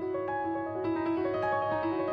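Grand piano played solo in a slow improvised jazz line. Single notes in the middle register are struck several times a second and ring on into one another.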